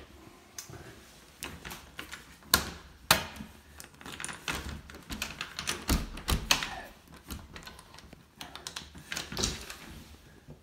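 A run of irregular clicks, knocks and thumps from a door being handled and opened, with two sharp knocks about two and a half and three seconds in and another cluster around the middle.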